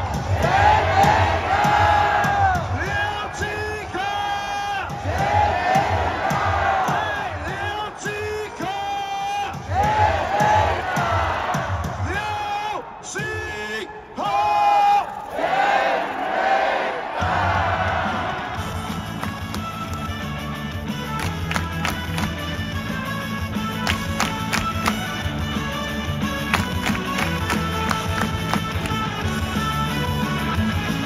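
Baseball cheering: shouted chant lines in Mandarin over a regular pounding drum beat, with the crowd joining in. About seventeen seconds in, the shouting stops and a recorded cheer song with a steady beat plays on.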